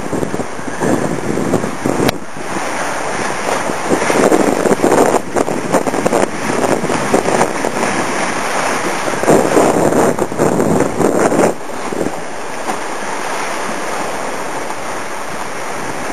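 Wind buffeting the microphone and water rushing past the hull of a sailing trimaran under way, swelling in surges and settling to a steadier, lower rush after about twelve seconds.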